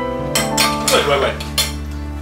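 A metal fork clinking against a plate a few times over about a second, ending as the fork is set down on the plate.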